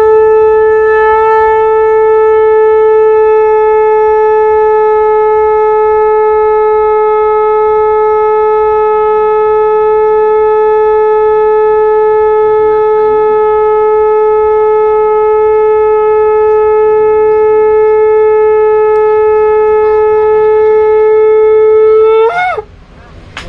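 Conch shell (shankha) blown in one long unbroken note, held steady at a single pitch for over twenty seconds.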